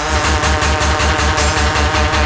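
Hard house electronic dance music from a DJ set: a fast, steady kick-drum and bass beat under layered synth lines, coming in abruptly at the start.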